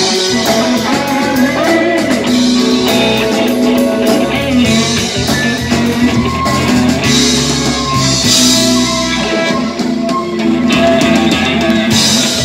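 Live rock band playing: violin over electric guitar, bass and drum kit.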